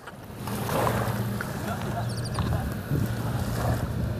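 Steady low drone of a boat engine running, over wind on the microphone and small waves washing on the shore; a short run of faint high ticks about two seconds in.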